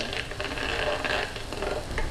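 Minced shallots and garlic with sugar sizzling in hot oil in a wok as a metal ladle stirs them, with a few light clinks of the ladle against the wok.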